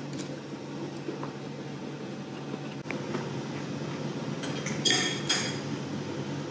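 A metal fork clinking against a ceramic plate during a meal, with a few light clicks and then a cluster of sharp, ringing clinks about five seconds in, over a steady low room hum.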